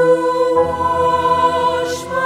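A choir singing slow, sustained chords, with a change of chord about half a second in.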